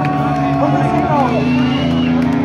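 Live rock band playing loudly: sustained bass and guitar notes under a vocalist's sliding, held vocal line, heard through a phone microphone in the crowd.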